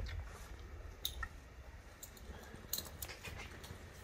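Faint handling of a rope halter on a Highland bull: a few scattered soft clicks and rustles over a low rumble.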